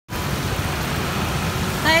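A car passing along a wet street, a steady hiss of tyres on wet road over a low engine rumble. A voice starts near the end.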